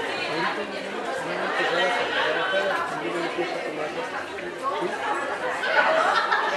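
Crowd chatter: many people talking at once in a large hall.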